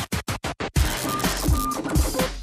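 Electronic pop backing track: it opens with a rapid stuttering break of short chopped stabs, about ten a second, and after nearly a second the full beat with a heavy kick drum comes back in.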